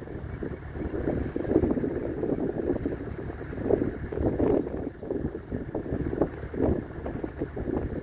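Wind buffeting the microphone in irregular gusts, surging and dropping every second or so.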